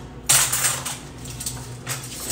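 Metal utensils clinking and rattling in a kitchen cutlery drawer as they are picked through: a clatter just after the start, lighter clinks after it, and another sharp clink near the end.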